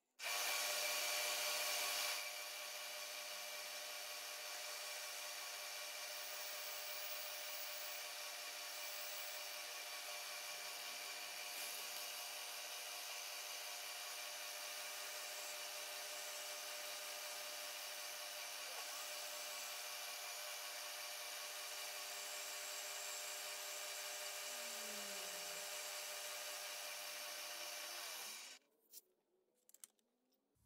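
Vertical milling machine running, its end mill cutting a metal casting: a steady machine whine with cutting noise, louder for the first two seconds and stopping shortly before the end.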